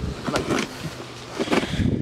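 A knife blade slitting the packing tape and cardboard of a flat shipping box, a scratchy scraping and tearing, with faint low voices in the background.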